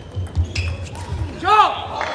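Table tennis hall: dull low thuds for the first second or so, then a short shout rising and falling in pitch about one and a half seconds in.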